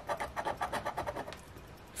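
A coin scraping the coating off a scratch-off lottery ticket: a quick run of short scratching strokes, about ten a second, that stops about a second and a half in.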